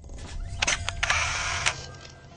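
Camera shutter sound effect for a logo animation: a run of sharp shutter clicks with a whirring, rattling noise between them, fading near the end.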